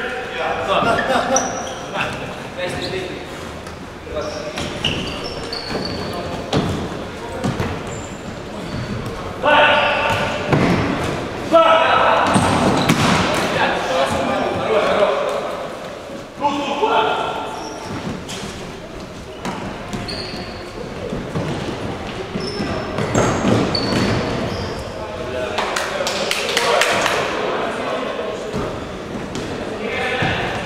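Indoor futsal game in a large echoing hall: players shouting to each other in short bursts, the ball thudding on the hard court and being kicked, and brief high squeaks of shoes on the floor.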